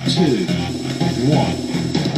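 Background music with guitar, playing throughout.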